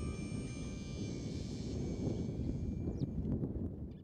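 A high chime rings on and fades out over about two seconds, above a steady low rumbling noise. A few faint clicks come near the end.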